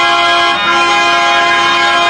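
Harmonium playing long, steady reedy notes, moving to a new note about half a second in.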